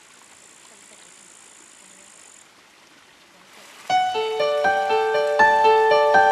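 Faint steady rush of spring water pouring from a wooden spout. About four seconds in, louder solo piano music starts, with evenly paced notes that then dominate.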